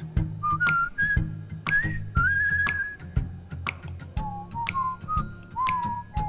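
Background music: a whistled melody over a steady beat of about two ticks a second and a low bass line.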